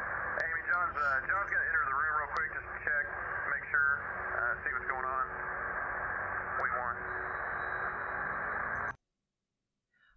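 Voices over a two-way radio, thin and hissy, with a steady hiss underneath the talk. It cuts off suddenly about a second before the end.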